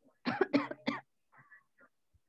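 A person coughing: three short coughs in quick succession in the first second, followed by a few faint short noises.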